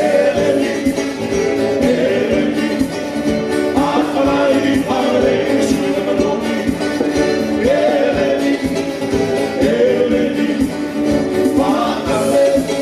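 Live band music: a man singing lead over acoustic-electric guitar and keyboards, with a steady beat.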